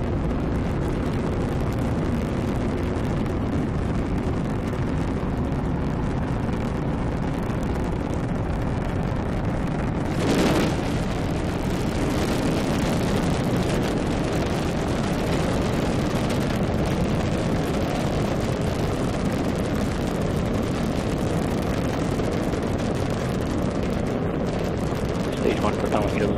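Falcon 9 first stage's nine Merlin engines firing during ascent, heard as a steady deep rumbling rocket noise, with a brief louder surge about ten seconds in.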